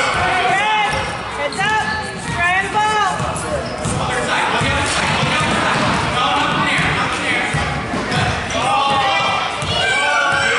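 Basketball bouncing on a hardwood gym floor as it is dribbled, a run of repeated thuds through the middle, with voices calling out at the start and near the end.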